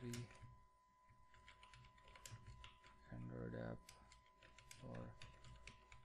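Faint computer keyboard typing: a run of irregular key clicks as text is entered. A low voice murmurs briefly twice, midway and near the end.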